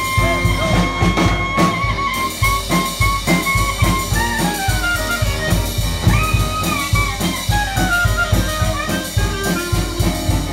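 Live New Orleans jazz: a clarinet plays a solo melody line over a drum kit keeping a steady beat, with piano accompaniment.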